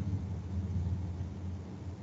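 Steady low hum with a faint hiss: background noise picked up by the presenter's microphone during a pause in speech.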